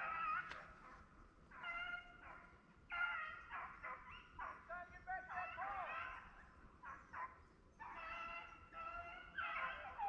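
Rabbit hounds baying on a rabbit's trail in the brush: runs of drawn-out, pitched bays, several close together and sometimes overlapping, with short gaps between runs.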